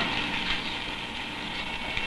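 Steady low hum with hiss, the machine-like background noise of an old film recording, with one faint tick about half a second in.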